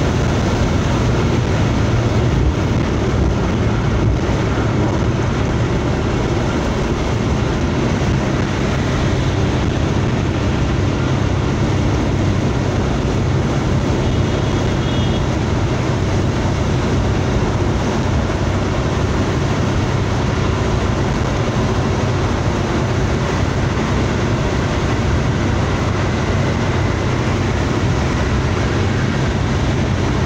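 Steady road noise inside a car's cabin while cruising at motorway speed: tyre roar and engine hum, heaviest in the low end and unchanging throughout.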